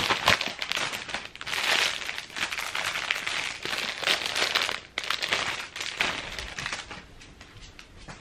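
Clear plastic packaging and a paper mailer crinkling and rustling as clothes are pulled out and handled, in repeated bursts that die down near the end.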